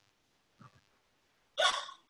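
A pause, then near the end a single short, breathy burst of laughter from a person.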